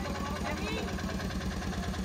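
Three-wheeler auto-rickshaw engine idling with a steady, rapid low chug, under faint nearby voices.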